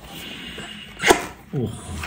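A single sharp click about halfway through, then a short vocal sound with falling pitch near the end.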